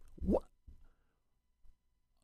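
A man's brief 'wh—' with a rising pitch, cut off about half a second in, then near silence.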